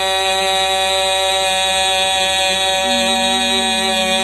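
A man's voice, amplified through a loudspeaker system, holds one long unwavering note: the drawn-out last vowel of the lament cry "khuya" ("my brother"). A faint second, slightly higher tone joins near the end.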